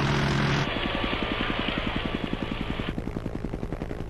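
Helicopter rotor beating in a fast, even chop as the helicopter passes overhead, with a rushing noise that cuts off about three seconds in.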